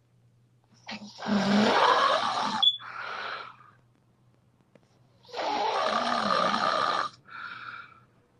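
A sleeping person snoring: two long, loud snores about four seconds apart, each followed by a shorter, quieter breath out.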